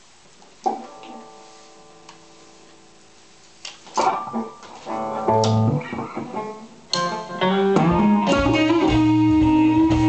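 Gretsch G5120 Electromatic hollow-body electric guitar played through an all-tube amp: a single chord struck about a second in and left to ring and fade, then from about four seconds in picked notes that build into a continuous riff with a prominent low bass-note line.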